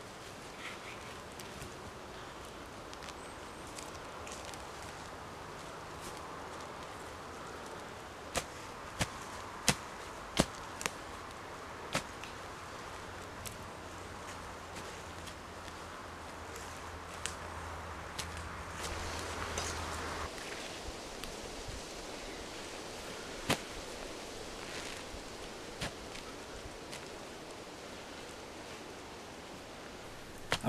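Short-handled shovel digging into damp, peaty turf: scattered sharp knocks and clicks as the blade cuts in and levers out clods, a cluster of them a third of the way in and a few more later, over a steady faint hiss. A low hum sounds for several seconds in the middle.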